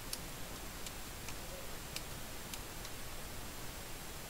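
Steady hiss from an idle audio line, with about six faint, sharp clicks at irregular intervals.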